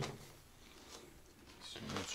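A wooden block knocks down on a tabletop right at the start, then near silence with only faint room tone until a voice begins at the very end.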